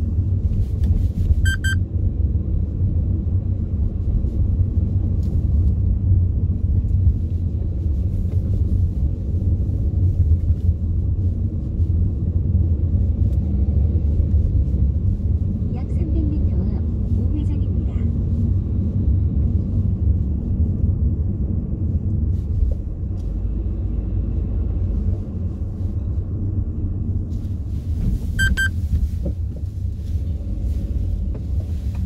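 Steady low rumble of a car driving along a road, heard from inside the cabin. A short high electronic beep sounds near the start and again near the end.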